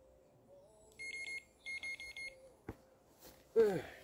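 Electronic fishing bite alarm on a rod rest beeping in two quick bursts of rapid, high-pitched beeps, followed by a single click.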